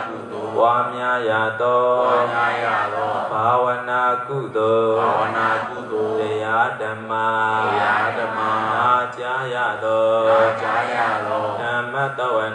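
Male voice chanting Buddhist Pali verses in a slow, melodic recitation, each phrase held and bending in pitch, carried over a loudspeaker system.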